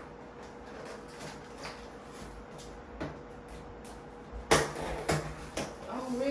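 A knife cutting the packing tape on a small cardboard box, with faint handling knocks, then a loud short cut or knock about four and a half seconds in and two smaller ones just after.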